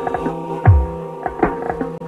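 Music: a sustained droning chord with a deep bass thump that falls in pitch about two-thirds of a second in, and light ticking percussion in between.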